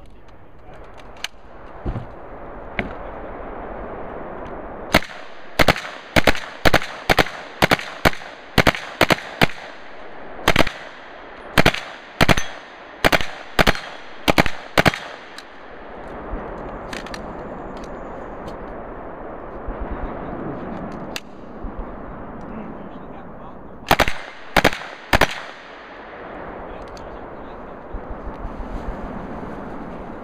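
An open-bolt Uzi submachine gun firing a rapid string of about a dozen shots and short bursts for some ten seconds, with a high ringing over the shooting as steel targets are hit. After a pause of several seconds, three more loud shots come in quick succession.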